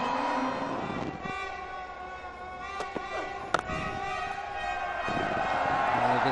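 Stadium crowd noise after a boundary, with a long steady horn blown in the stands from about a second in until shortly before the end.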